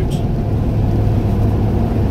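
Steady engine and road noise inside the cabin of a moving car, a low even hum.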